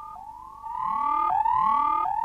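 Electronic science-fiction sound effect: a steady tone under repeated upward-gliding wails, each about two-thirds of a second long, swelling up about half a second in.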